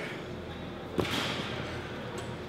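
A single sharp thud about a second in: a dumbbell set down on rubber gym flooring, over a steady background of gym noise with faint voices.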